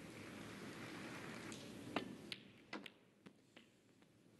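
A snooker cue tip strikes the cue ball about halfway in, with a sharp click. Several fainter clicks of balls knocking together follow over the next second or so, over the low hush of the arena.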